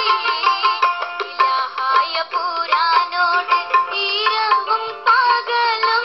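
A singer performing a melody with instrumental accompaniment, played from a TV stream through computer speakers and re-recorded, so it sounds thin, with no bass.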